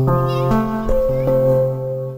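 Background music: a melodic phrase of held, stacked notes that change every half second or so, with a short wavering high tone near the start. The phrase begins suddenly and fades away near the end.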